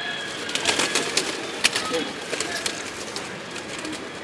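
Madrasi high-flyer pigeons in a loft cooing, with a quick run of sharp clicks and rustles in the first second or so as birds move and flap and one is handled.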